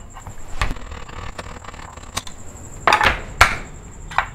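Point of a kitchen knife being driven into the lid of a meatloaf tin to punch an opening, heard as several sharp metallic knocks with the loudest pair around three seconds in.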